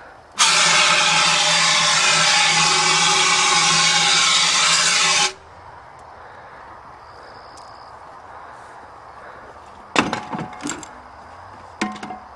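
Hand-held fire extinguisher discharging onto a burning car engine in one loud, steady hiss lasting about five seconds, then cutting off suddenly. A couple of sharp knocks follow near the end.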